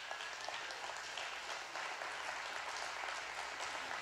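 Congregation applauding: many hands clapping in a steady patter, fairly quiet and even.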